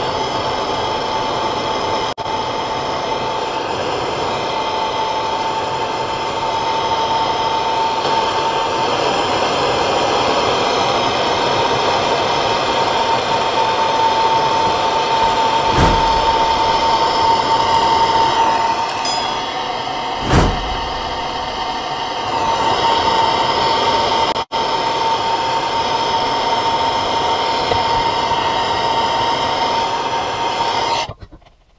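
Blowtorch flame burning steadily as it heats a steel tube in a vise: a continuous rush with a thin steady whistle. Two short knocks come about halfway through.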